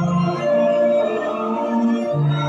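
Mixed choir singing a Methodist hymn in slow held notes, the chord changing about every half second.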